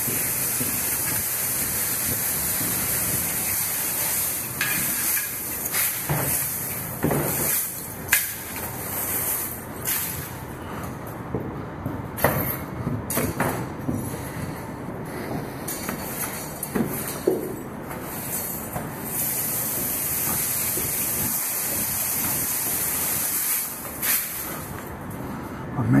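Push broom sweeping the wooden floor of an empty semi trailer: long stretches of bristles scraping with a steady hiss, broken by sharp knocks of the broom head against the floor and walls.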